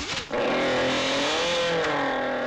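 A long, drawn-out vocal cry that starts about a third of a second in and is held, wavering slightly in pitch.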